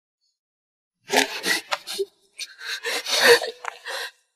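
A woman's strained, gasping breaths and short breathy cries come in quick bursts, starting about a second in, as she struggles.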